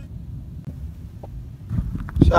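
Low, steady rumble of wind on the microphone, with a couple of faint short sounds.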